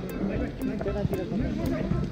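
Faint, distant shouts of players across a futsal pitch, with a few light clicks over a low background rumble.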